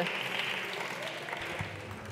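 Applause from a group of deputies in the chamber, slowly dying away.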